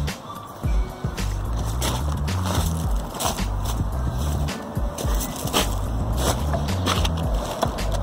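Background music playing, with scattered sharp knocks and clatter of pieces of split wood being picked up and set down.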